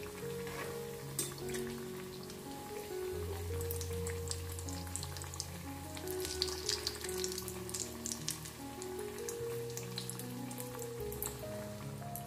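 Vegetable cutlets deep-frying in hot oil, the oil crackling and popping steadily. Soft background music with long held notes plays under it.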